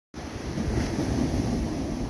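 Small ocean surf washing onto a beach: a steady rush of noise, with wind buffeting the microphone.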